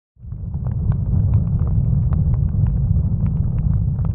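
A large open fire burning: a steady low rumble with scattered sharp crackles and pops.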